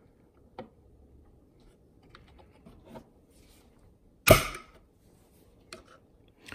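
Hammer taps on a steel pin punch, driving the roll pin out of the hook pinion gear on an Elna SU-62C sewing machine's shaft. A few light, faint taps and one much sharper metallic strike about four seconds in.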